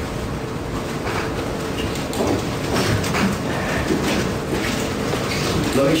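Courtroom room noise: a steady low rumble with a faint continuous hum and faint, indistinct voices in the background.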